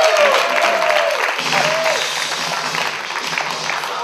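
Audience applauding in a hall, with a few whoops and cheers in the first second or so; the clapping then fades gradually.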